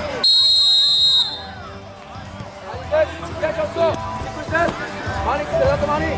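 Referee's whistle blown once for the kick-off: one steady shrill blast of about a second, just after the start. Then high children's voices call out as play gets under way.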